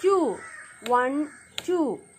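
A crow cawing three times in quick succession, each caw short and falling in pitch.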